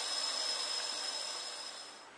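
Water from a PVC compression-coupling water filter streaming fast into a full glass and splashing over its rim: a steady splashing rush that fades away near the end.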